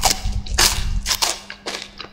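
Close-up crunching of a crisp chocolate wafer being bitten and chewed, about four sharp crackly crunches with the loudest about half a second in.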